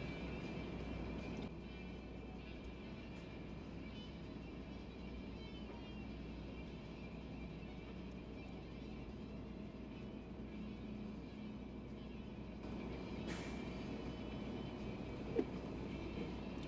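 Steady low hum of a stationary car idling, heard inside the cabin; it drops a little about a second and a half in, rises again near the end, and there is one short click about thirteen seconds in.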